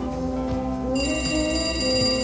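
Television sound with music playing, and about a second in an electronic telephone ringer gives a steady high ring for about a second: an incoming call.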